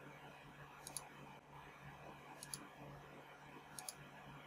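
Three faint computer mouse clicks, about a second and a half apart, over near silence.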